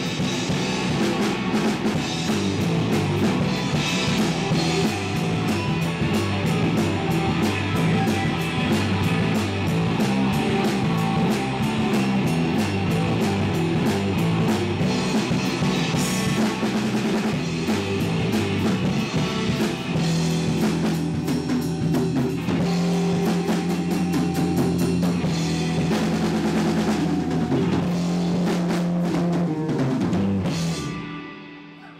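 Live rock band playing an instrumental passage on electric guitars and a drum kit, loud and steady, moving into long held notes in the last third.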